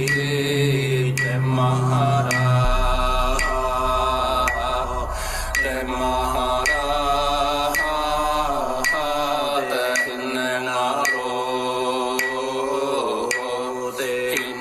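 Māori chant telling the creation of the Earth, one voice held in long wavering phrases over music, with a sharp tick about twice a second and a low drone underneath.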